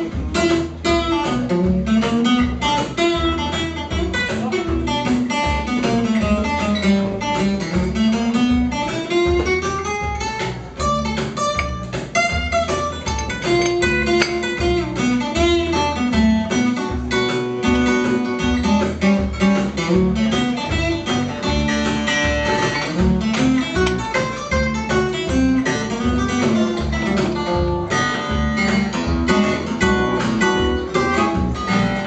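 Live instrumental guitar break: a steel-string acoustic guitar picks fast runs of notes with gliding bends, over a steady electric bass line.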